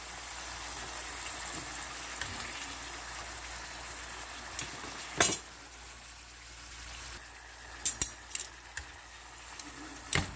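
Sweet potato slices frying in shallow oil in a pan, a steady sizzling hiss. A metal utensil clacks sharply once about five seconds in, then clicks a few times more lightly near eight seconds.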